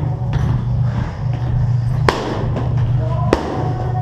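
Two sharp smacks of boxing-glove punches landing, about a second apart, over a steady low rumble.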